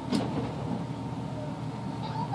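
Steady background room noise with a faint even hum, and a brief soft click just after the start.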